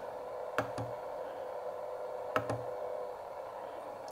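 Steady hiss of band noise from a homemade CW transceiver's receiver, with two sharp clicks, about half a second in and again near two and a half seconds, as its tuning knob is worked.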